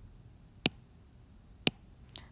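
Two short, sharp clicks about a second apart over quiet room tone.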